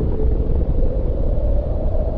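Deep, continuous rumble of a nuclear explosion, with a faint higher tone rising slightly through it.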